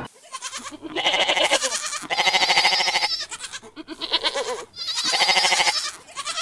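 A goat bleating about five times, each bleat a long, quavering call of about a second, dubbed in as a comic censor sound over a spoiler.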